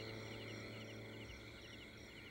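Faint night ambience of crickets chirping in a steady, evenly repeating pattern, over a low steady hum.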